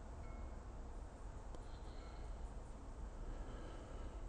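Quiet background: a steady low rumble with a few faint, short, high-pitched tones and one faint click.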